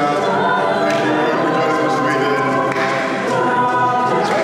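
A cappella group of mixed male and female voices singing held chords together, unaccompanied, with the chord shifting about two-thirds of the way through.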